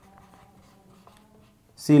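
Whiteboard marker writing on a whiteboard: faint, short scratching strokes as words are written.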